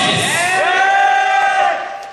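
An announcer's long, drawn-out call through a hall PA, ending a competitor introduction: one held voice that rises, holds and falls in pitch, echoing in the hall and fading away near the end.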